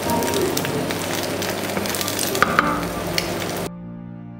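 An egg frying in oil in a nonstick frying pan, sizzling steadily with scattered crackles and pops. The sizzle cuts off suddenly near the end, leaving soft background music.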